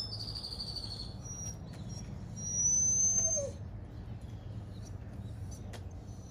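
Small birds calling: a thin, descending trill in the first second, then short high notes and a louder, rising high whistle around the middle, over a steady low hum.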